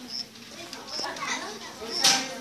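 Voices talking in the background, with a short high chirp repeating about once a second.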